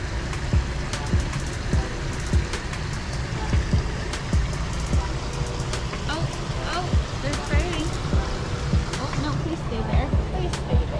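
Outdoor traffic noise from a busy street, a steady rumble with irregular low thumps that sound like wind buffeting an action camera's microphone, which has no wind cover.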